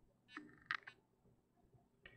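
Mostly near silence, with a short faint sound about a third of a second in and two or three quick faint clicks at the computer just before the one-second mark.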